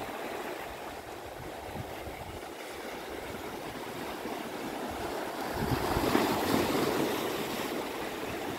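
Sea surf washing in over a shallow beach, a steady rush of water that swells louder as a wave comes in about two thirds of the way through.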